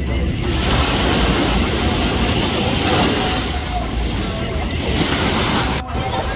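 Ocean waves and surf washing as a loud, steady rush, with wind rumbling on the microphone and faint voices under it. It breaks off suddenly just before the end.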